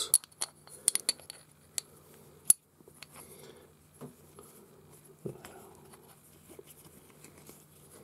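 Scattered small metallic clicks and taps as a Japanese plane blade is handled and clamped into a Draper honing guide, most of them in the first couple of seconds.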